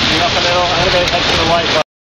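Steady rush of wind and water noise aboard a racing sailboat under way, with crew voices calling out over it. Everything cuts off abruptly near the end.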